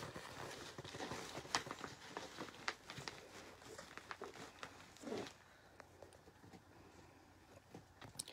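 Faint rustling and crinkling of a plastic shopping bag and strips of duct tape being handled and pressed down along its edges, with scattered small clicks.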